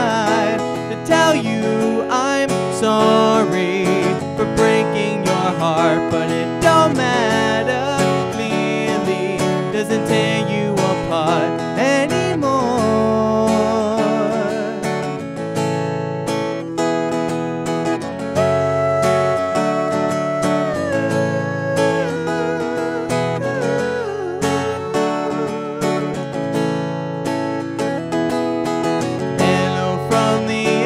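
Steel-string acoustic guitar strummed in chords while a man sings over it, his voice gliding and wavering through runs, with one long held note about two thirds of the way through.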